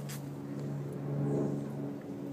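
A steady low mechanical hum with several even overtones, swelling slightly around the middle, with a faint click at the very start.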